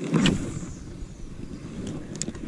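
A spinning-rod cast: a swish with sleeve fabric rubbing close to the chest-worn microphone, loudest about a quarter second in and fading over the next second.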